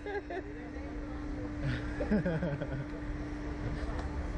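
Steady mechanical hum over a low rumble from the slingshot ride's machinery. Short nervous vocal sounds come from the riders at the start and again about two seconds in.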